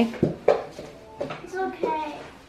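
A young child's voice making a few short sounds without clear words, with a sharp thump and a rustle in the first half second.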